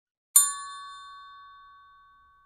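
A single bell-like chime, struck once about a third of a second in and ringing out in a slow fade: an outro sound effect for the logo end screen.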